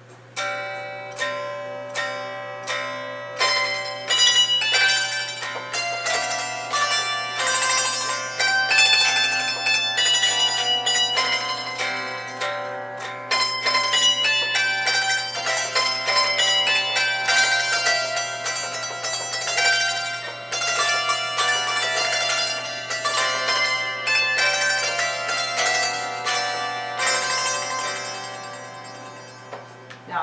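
Marxophone, a fretless zither with spring-mounted metal hammers, playing a Christmas carol: a melody of struck, ringing metal-string notes over chords plucked with a pick. The playing starts about half a second in and stops just before the end.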